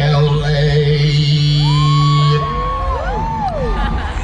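Live funk band music over a loud PA, heard from the crowd: a long held low bass note that stops a little past halfway, under high sliding notes that rise and fall in arcs.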